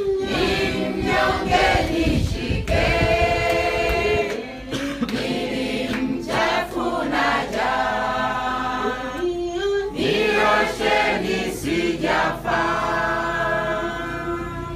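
A congregation singing together in a group, in sung phrases with short breaks between them.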